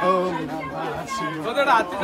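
Several people talking at once, with a steady low hum underneath.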